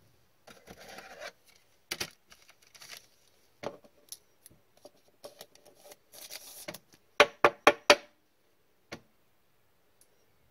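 A trading card being handled and slid into a rigid clear plastic toploader: soft plastic rubbing and scraping with small clicks, then a quick run of five sharp clicks a little after seven seconds and one more near the end.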